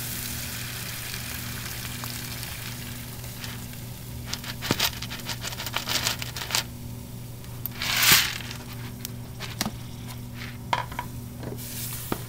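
Liquid nitrogen hissing as it boils off on contact with an ice bucket after being poured, fading over the first few seconds. Then scattered sharp clicks and crackles and one louder hiss about eight seconds in, over a steady low hum.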